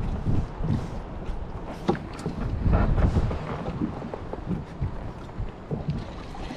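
Wind buffeting the microphone over choppy water around a plastic fishing kayak, a steady low rumble broken by a few short knocks and clicks.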